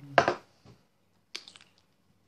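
Mouth sounds of eating a boiled sausage with mustard: a loud bite just after the start, then a few sharp, wet chewing clicks.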